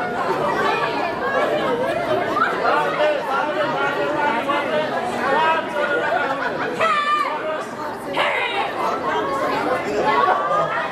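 Crowd of people talking at once, many overlapping voices, with one louder voice calling out about seven seconds in.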